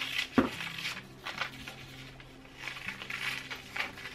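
Scissors cutting through pattern paper: a series of short, irregularly spaced snips, with a faint steady hum underneath.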